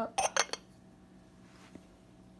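Ceramic lid of a duck-shaped covered dish clinking twice against its base, a fifth of a second apart, as it is set back on.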